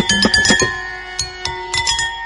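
Jalatarangam: water-filled porcelain bowls struck with thin sticks, a quick run of bright ringing notes in the first half-second, then a few sparser notes left to ring.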